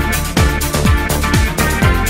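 Electronic dance music with a steady kick drum, a little over two beats a second, under sustained synth chords.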